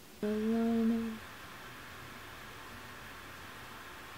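A woman hums a single steady note with her mouth closed for about a second.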